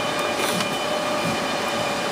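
Steady background hum and hiss with a few faint steady tones, and faint ticks of a hand screwdriver turning a screw into the sheet-steel side of a server chassis.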